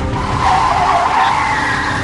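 Car tyres squealing in one long skid that starts just after the beginning and cuts off near the end.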